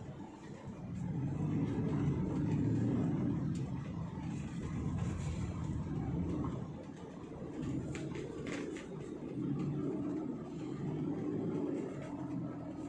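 Low road and engine rumble heard from inside a moving car's cabin, swelling about a second in and rising and falling after, with a few brief clicks about eight seconds in.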